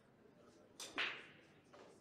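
A light click followed straight after by a single sharp crack about a second in, which dies away over about half a second.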